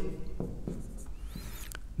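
Marker pen writing on a whiteboard: quiet scratching strokes of the felt tip, with a few faint squeaks partway through.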